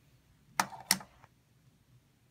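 Two light, sharp clicks about a third of a second apart, with a fainter one after, from handling of the phone or hard plastic toys.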